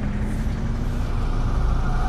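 Low, steady rumble of city road traffic, with a faint steady hum that fades out about one and a half seconds in.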